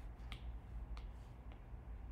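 Stylus tip clicking on a tablet's glass screen while writing: three sharp clicks in the first second and a half, over a low steady hum.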